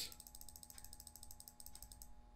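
Faint, rapid, evenly spaced ticking, about fourteen ticks a second, over a low steady hum.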